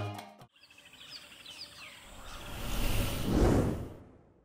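Channel logo sting: the end of the background music, then a few faint, short bird chirps over a soft ambient bed, and a whoosh that swells up through the last second and a half and stops abruptly.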